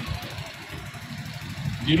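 A pause in a man's speech, leaving a low, steady background rumble; the speech picks up again near the end.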